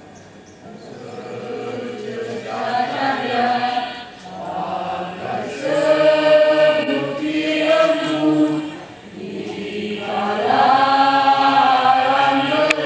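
A mixed choir of women and men singing together, led by a conductor, in long held phrases. The singing starts softly about a second in and swells, with short breaths between phrases.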